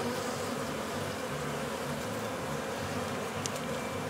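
Honey bees from a strong colony buzzing steadily around an opened hive, many wingbeats blending into one continuous hum.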